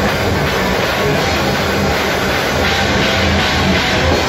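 Live metal band playing: loud, dense distorted electric guitars over low sustained notes that shift in pitch, with no singing.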